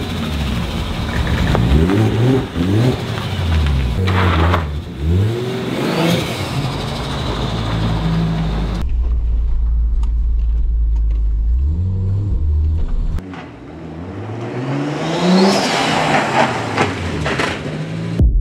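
A 1994 Toyota Supra's straight-six engine revving and pulling away, its pitch climbing and dropping again and again as it accelerates. The sound changes abruptly about nine seconds in to a steadier low rumble, and the engine climbs again near the end.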